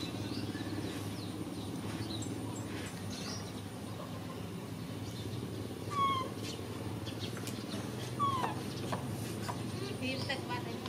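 A small engine running steadily at idle, a low even hum, with a few short chirping calls about six and eight seconds in.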